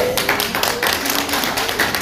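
A quick, irregular run of sharp claps, about ten a second: a short burst of applause from the audience in a hall.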